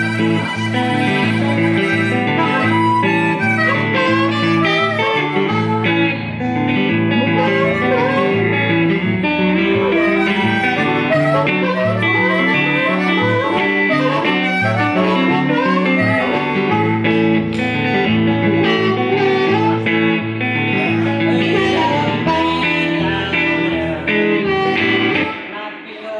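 Live blues: a harmonica playing a run of bent, gliding notes over a steady electric guitar accompaniment. The music drops away near the end.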